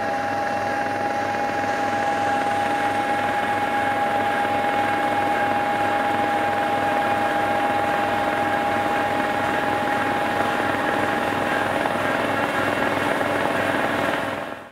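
Large rotary snowblower running steadily while blowing snow, a steady engine noise with a strong high whine and a low, even throb beneath it.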